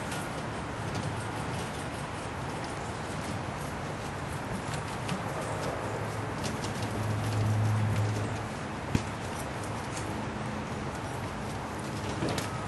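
Steady background noise with scattered light clicks and rustles. A low hum swells for about two seconds past the middle, and a single sharp click follows.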